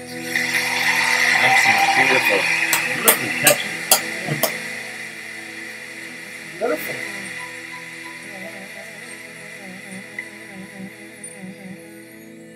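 Live Indian film song performed by a large vocal and instrumental ensemble, over steady held notes. A louder, noisier passage with a run of sharp percussive hits comes in the first few seconds, and a wavering melody line follows later.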